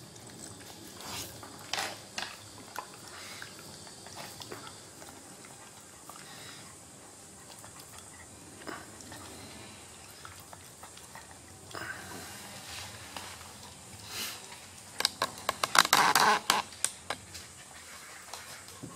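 Dogs scuffling and stepping about on a wooden floor: scattered soft clicks and scuffs, then a quick run of sharp clicks and scrapes about fifteen seconds in.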